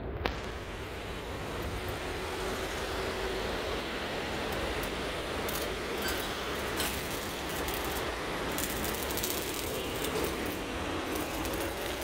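Steady background rumble of passing traffic, with a few light clicks from handling.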